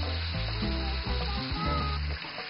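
Food sizzling steadily as it fries in a wide paella pan of rice, meat and peppers, under background music with a low bass line.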